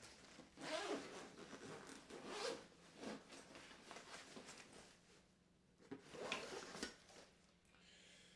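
Zipper on a soft gear case pulled open in a few short rasps, with rustling as the case is handled and the gimbal is lifted out.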